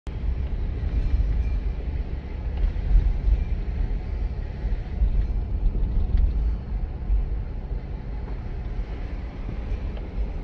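Car driving at low speed, heard from inside the cabin: a steady low rumble of engine and tyre noise that swells and eases a little.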